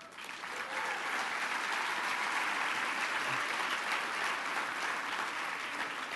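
A large indoor audience applauding, building up over the first second and then holding steady.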